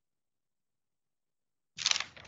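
Silence, then about three-quarters of the way in a short, loud burst of clicking and clatter from a computer keyboard.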